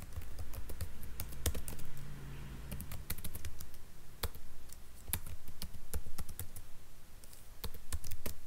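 Typing on a computer keyboard: irregular keystrokes in quick runs separated by short pauses.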